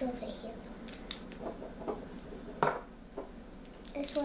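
Small glass nail polish bottles knocking and clinking as they are handled and set down, with several light knocks and one sharper one a little past halfway.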